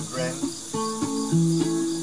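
Ukulele strummed in an even rhythm between sung lines, its chords changing a few times. Behind it, a steady high chorus of crickets.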